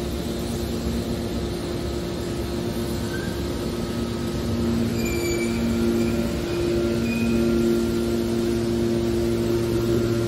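Hydraulic scrap metal baler running: a steady machine hum with a low rumble, growing somewhat louder about halfway through, with a few faint high squeaks.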